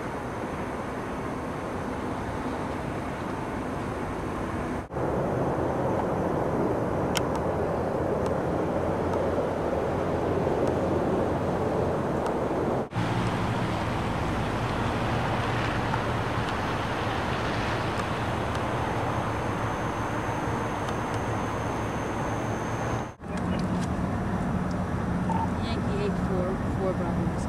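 Refinery flare stack burning off gas with a steady rushing rumble, in several outdoor takes joined by short cuts about 5, 13 and 23 seconds in. A steady low hum runs underneath in the later takes.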